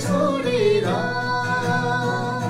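A man and a woman singing a Christmas carol together, with a strummed acoustic guitar accompanying them. A long note is held from about a second in.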